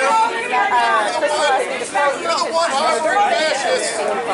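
People talking, with several voices overlapping in an unclear crowd chatter.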